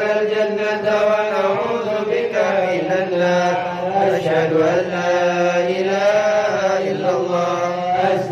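Arabic dhikr chanted to a slow melody in long held phrases, with short breaks between lines.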